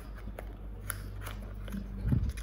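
Faint scattered clicks and crackles of a small cardboard box being handled and opened by hand, over a steady low hum.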